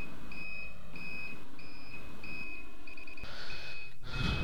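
An electronic beeper sounding a high-pitched beep over and over at an even pace, about three beeps every two seconds.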